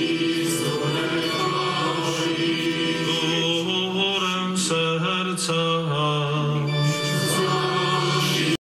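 Liturgical chant sung in Polish at the start of the Mass preface: long held notes in a low male range that move in steps, with sung words.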